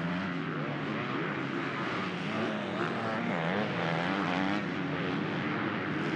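Motocross bike engines revving up and down as the bikes ride through a dirt corner, the pitch rising and falling with the throttle.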